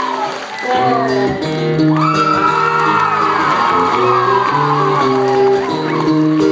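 Solo acoustic guitar begins the song's intro about a second in, playing steady sustained notes. Audience members whoop and cheer over the opening notes.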